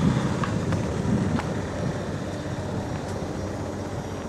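Steady low outdoor rumble with wind on the microphone, a little stronger in the first second, and a few faint ticks.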